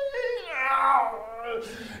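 A man's singing voice ending a long held high note, then sliding down in pitch in a wavering wail that trails off lower and fainter.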